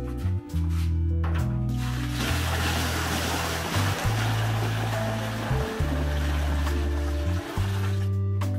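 Background music, and from about two seconds in a thick milky liquid pouring in a heavy stream into a large steel cooking pan, a steady rushing splash that stops shortly before the end.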